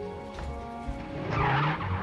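Background music with sustained notes; about a second and a half in, a vintage car's engine and tyres swell up as it drives past, its engine note rising slightly.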